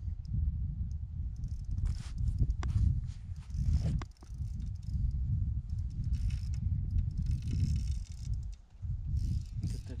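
Wind buffeting the microphone in an uneven low rumble, with a few sharp clicks about two, three and four seconds in and a faint hiss near the middle.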